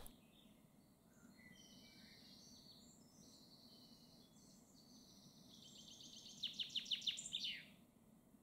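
Faint woodland birdsong: thin high calls, then near the end a fast run of about ten repeated notes that closes with a falling flourish.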